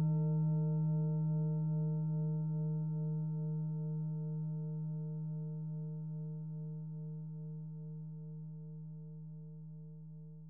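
A singing bowl's long ringing tone fading slowly away, its low fundamental the strongest, with a higher overtone wavering about twice a second.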